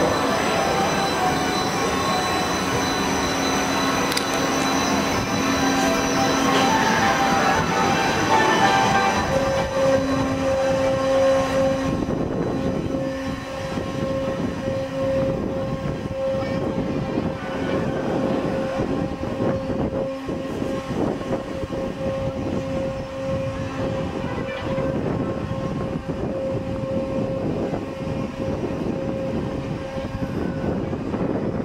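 Balloon swing ride's machinery running as the ride turns, with a steady whine held from about a third of the way in over a rumble.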